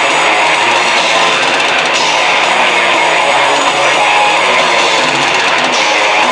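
Death metal band playing live: heavily distorted electric guitars and bass over a drum kit, in a loud, dense wall of sound that never lets up.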